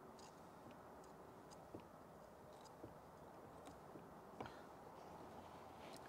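Near silence, with a few faint, scattered clicks and taps as a cloth-wrapped squeegee works the edge of a screen protector film on a dashboard touchscreen.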